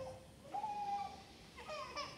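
A small child's high voice: one drawn-out vocal sound about half a second in, then a shorter one near the end, over a quiet room hush.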